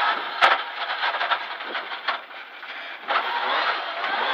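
Rally car running on a gravel stage, heard inside the cabin as engine and tyre-on-gravel noise. It quietens as the car slows for a sharp corner in second gear, then grows louder again about three seconds in as it accelerates through the turn. A sharp click sounds about half a second in.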